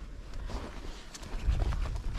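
Footsteps on packed snow, a few irregular soft steps, with a low rumble on the microphone that grows in the second half.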